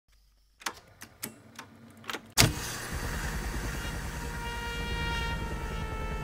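Sharp mechanical clicks as the keys and levers of a portable reel-to-reel tape recorder are worked, five or six in the first two seconds, then a loud clunk a little under halfway through. A steady droning hum with a fast low pulsing follows and carries on.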